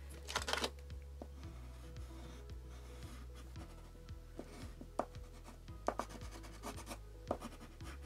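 Dry water-soluble wax crayon (Lyra Aquacolor) scratching and rubbing across black paper in quick sketching strokes, with a few sharper taps as the crayon meets the paper.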